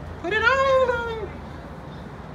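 A single drawn-out cry, about a second long, that rises and then falls in pitch.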